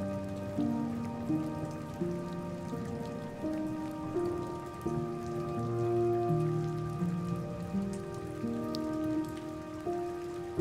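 Slow, calm relaxation music, sustained notes changing about every half second to a second, laid over a steady patter of rain.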